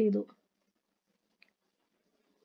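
A voice finishing a word, then near silence with one faint click about one and a half seconds in.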